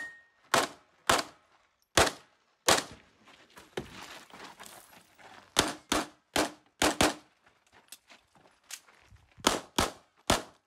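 Pistol shots in a competition course of fire: about eleven sharp reports in irregular strings. Four come spread over the first three seconds, then a quick run of five between about five and a half and seven seconds, and a close pair near the end.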